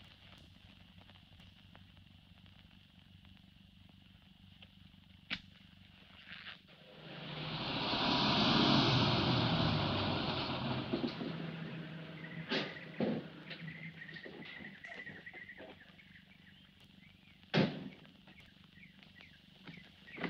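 A car drives up: a swelling rush of engine and road noise that builds over a couple of seconds, peaks and slowly dies away as it pulls in. A few light clicks follow, then a single sharp knock near the end.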